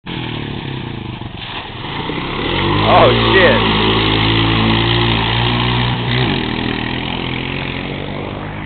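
Dirt bike engine revving up a little before three seconds in, held at high revs for about three seconds, then dropping back.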